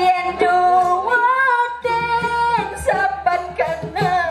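A woman singing solo into a microphone in the style of Balinese arja dance-drama, holding long notes that waver and glide slowly between pitches.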